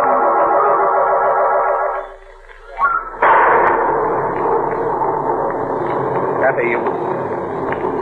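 A radio-drama music bridge of held, wavering organ chords that ends about two seconds in. About a second later a storm sound effect cuts in suddenly, a loud burst settling into steady rushing noise of wind and rain.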